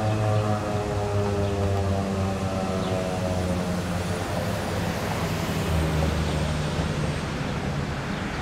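Federal Signal 2001-SRNB electromechanical siren winding down at the end of its steady alert signal: its tone slides slowly lower and fades over the first few seconds, leaving a lower hum that drops in pitch as the rotor slows.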